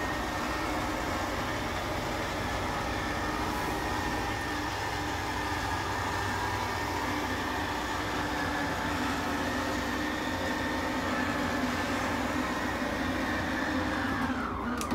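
Motorhome slide-out motor running steadily with a whine and hum as it extends the front living-room slide room. Near the end the whine drops in pitch and stops as the motor shuts off.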